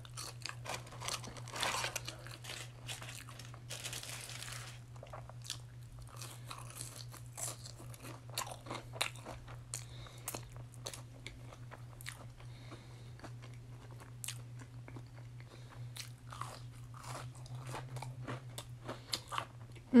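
A person biting and chewing french fries, with irregular soft crunches and wet mouth clicks throughout.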